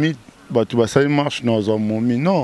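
Only speech: a man talking into a handheld microphone, with a short pause just after the start.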